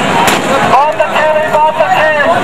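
A man's voice speaking loudly over a crowd's chatter, with a couple of sharp clicks about a quarter of a second in.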